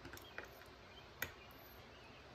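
Two faint ticks from the parts of a disassembled folding knife being handled, the blade just freed from its handle after the pivot was pushed out: a small one under half a second in and a sharper one just after a second. Otherwise the room is near quiet.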